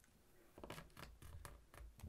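Near silence with a handful of faint ticks from about halfway through: fingers pressing and creasing a small folded sheet of origami paper against a tabletop.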